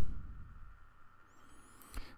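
Near silence: room tone with a low hum, after a man's voice trails off at the very start.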